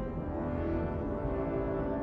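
Orchestral film score with low brass holding long, steady notes in a slow, sombre chord.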